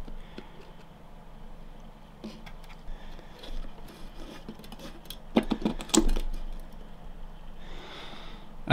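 A clear plastic deli cup being handled inside a glass tarantula enclosure: light plastic scrapes and taps, with a short cluster of louder clicks and knocks about five and a half seconds in.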